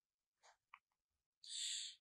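Near silence with a couple of faint ticks, then near the end a short breath in just before speaking resumes.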